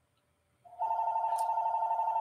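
A telephone ringing with an incoming call: an electronic ring with a fast warble that starts about two-thirds of a second in and keeps going.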